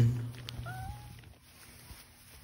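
The last note of a song fades away, then a seven-week-old puppy gives one short whine, rising and then holding level, about half a second in.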